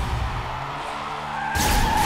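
Action-trailer sound mix: a steady noisy rush over low sustained music notes, then a sudden louder hit about a second and a half in, followed by a held higher tone.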